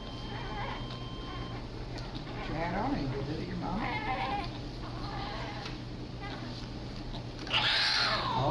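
Newborn baby crying in short, wavering wails, with a louder cry breaking out near the end.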